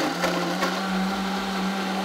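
Countertop blender running steadily at high speed, blending chopped coconut with water into coconut milk.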